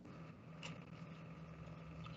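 Faint steady hum of background equipment or room noise, with a light click about two thirds of a second in.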